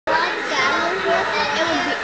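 Indistinct overlapping chatter of children's voices.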